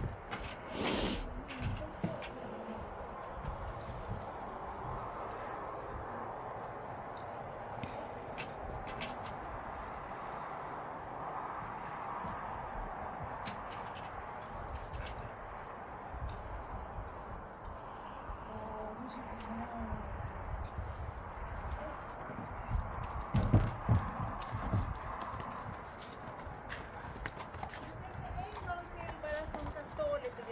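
Horse's hooves knocking and stamping on the floor and ramp of a horsebox as it is loaded and led out, in irregular thumps with the loudest cluster about two-thirds of the way through, over a steady background hiss.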